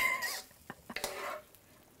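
Metal tongs clicking and scraping against a wok as stir-fried noodles are tossed: a brief squeak at the start, then a few light clicks about a second in.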